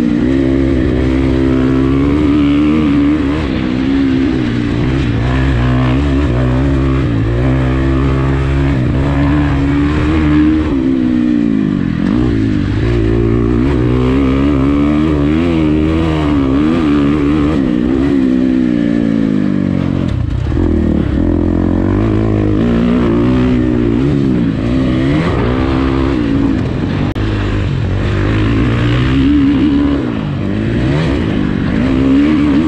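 2019 Husqvarna FC350 motocross bike's four-stroke single-cylinder engine, heard close up on board while being ridden hard around a dirt track. Its pitch repeatedly climbs as the throttle opens and falls away as it is shut off, with the deepest drops about a third and two thirds of the way through.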